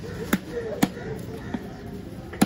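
Heavy knife chopping into a large trevally's head on a wooden chopping block: three sharp chops, the second the loudest and the last fainter.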